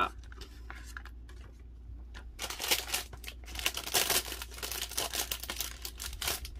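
A photo and its card mat being peeled up off a scrapbook page and handled: a few faint clicks at first, then dense paper rustling and crinkling from about two and a half seconds in.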